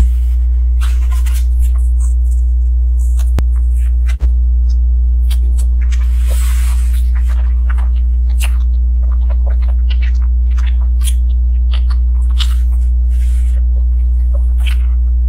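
A loud steady low hum throughout, with scattered small clicks and scrapes from handling mousse cakes in stiff plastic moulds, and a longer rustling scrape about six seconds in.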